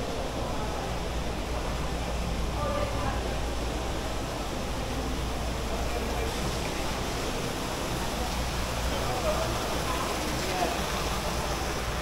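Indoor shopping-mall ambience: a steady rushing hiss under an indistinct murmur of distant voices.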